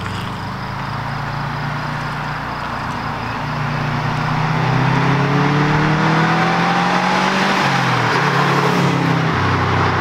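Car engine accelerating away down the road. Its pitch climbs steadily, drops at a gear change about eight seconds in, then climbs again, growing louder through the run.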